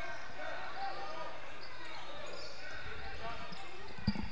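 Game sound from a basketball court in a large hall: faint, echoing voices of players and onlookers, with a basketball bouncing on the hardwood floor.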